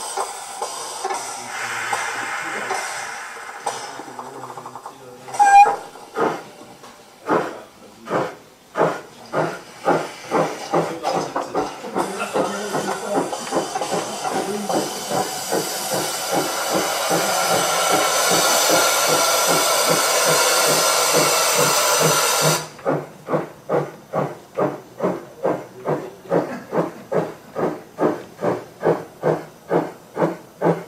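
A Gauge 1 model steam locomotive's sound decoder plays a steam engine starting away. It sounds a short whistle toot, then exhaust chuffs begin slowly and quicken to a steady beat of about two to three a second. Over the middle a loud hiss of cylinder steam runs for about ten seconds and cuts off suddenly. This is not yet the class 59's own sound but a sound file taken from another KM1 locomotive.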